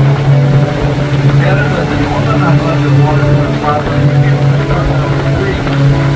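A boat engine running with a steady low drone, with faint voices in the background.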